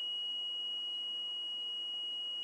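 Small electric buzzer powered by a homemade lemon-juice battery of copper-wire and wood-screw cells, holding one steady high-pitched tone.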